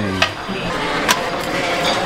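Busy buffet-hall din, steady and fairly loud, with two sharp clinks of metal serving tongs against stainless-steel pans, one just after the start and one about a second in.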